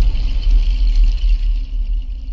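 Sound-designed logo intro sting: a deep, sustained low rumble left after a boom, with a thin high ringing tone above it, beginning to fade near the end.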